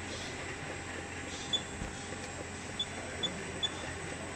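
Steady machinery noise from a factory floor, with short high-pitched beeps: one about a second and a half in, then three in quick succession near the end. The beeps are key-press tones from the touchscreen of an Anritsu SSV-series checkweigher as settings are tapped in.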